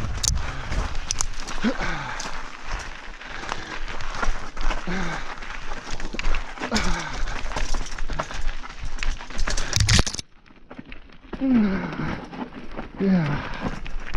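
Mountain bike rolling down a rocky dirt trail, with tyres crunching over gravel and rock and the bike rattling, amid noise on the microphone. The rider gives several short, voiced sighing breaths. About ten seconds in comes a loud jolt, after which the sound briefly turns muffled and quieter.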